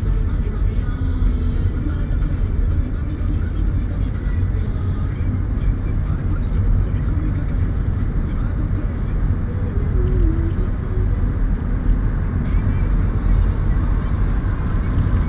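Steady low rumble of a car's engine and road noise heard from inside the cabin as the car drives slowly in heavy traffic.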